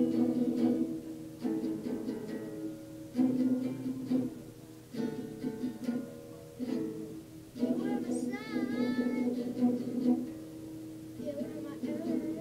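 Acoustic guitar playing a slow intro of strummed chords, played without a capo, with a new chord about every one and a half seconds. About eight seconds in, a short wavering sung note comes in over the guitar.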